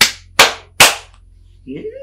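Three loud, sharp hand strikes in quick, even succession, claps or slaps, made to rouse an unresponsive man.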